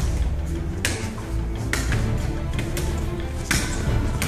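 Punches slapping into leather focus mitts, four sharp hits a little under a second apart, over steady background music.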